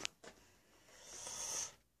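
A person's breath drawn in between phrases, a soft hiss that swells over about a second and then stops suddenly.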